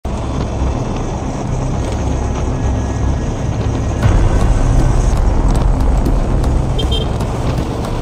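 Riding noise from a Honda Click 125i scooter on the road, its engine and wind on the microphone, with music playing over it. It gets louder about four seconds in.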